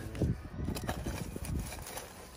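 Burning charcoal and ash being stirred and scooped in a fire pit: a run of light, irregular crunches and clinks.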